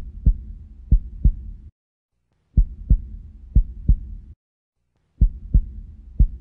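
Deep heartbeat-like thumps in double beats over a low hum: two double beats per group, with the groups repeating about every two and a half seconds and brief silences between them.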